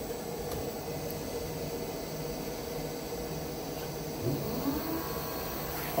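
Lapidary faceting bench motors running: a steady, quiet hum made of a few level tones. A brief rising-and-falling tone comes in about four seconds in.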